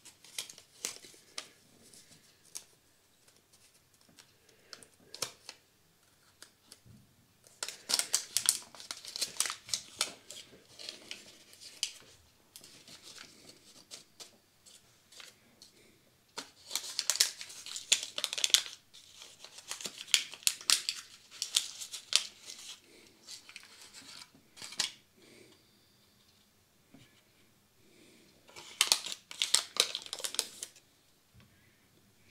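A small paper seed packet being handled and torn open by hand: several spells of crisp paper rustling and crinkling, the busiest about a third of the way in and again in the second half, with quiet gaps between.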